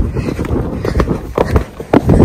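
Horse galloping on a sandy dirt track, an uneven run of hoofbeats and thuds heard from the saddle through a phone's microphone.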